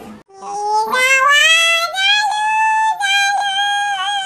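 A young child singing in a high voice, holding long notes that climb at first and then stay level, broken by short pauses about two and three seconds in.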